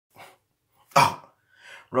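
A single short, loud vocal burst about a second in, with a faint breath-like sound after it.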